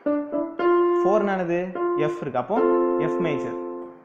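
Yamaha portable keyboard on its grand piano voice, several chords struck one after another, each ringing and fading, with a voice briefly heard over them.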